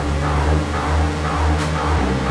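Electronic dance music: a deep bass line pulsing about twice a second under steady synth tones, with a short hi-hat-like hiss about one and a half seconds in.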